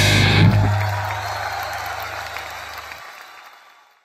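The last hits of a live metal band's electric guitar, bass and drums, one more struck about half a second in, then the final chord and amplifier hum ringing out and fading away to silence.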